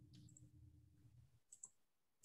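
Near silence: faint room tone with a low hum that stops after about a second and a half, then a couple of faint computer-mouse clicks near the end.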